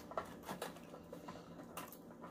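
Faint scattered clicks and taps of forks and fingers picking through food in takeout containers.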